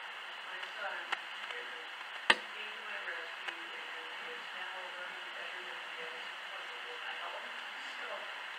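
A person's voice speaking faintly, off-microphone, over a steady hiss. There is a sharp knock about two seconds in.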